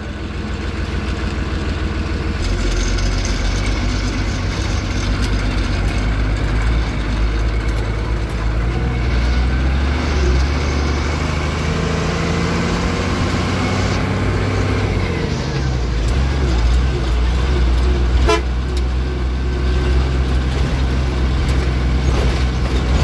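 Engine of a truck or bus heard from inside its cab, running steadily under way. Its pitch climbs for several seconds and falls back about fourteen seconds in.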